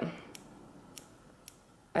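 Scissors snipping into the ends of a lock of hair, point-cutting: four short, crisp snips spaced about a third to half a second apart.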